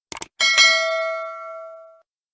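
Two quick clicks, then a bright bell chime that rings out and fades over about a second and a half: a notification-bell sound effect.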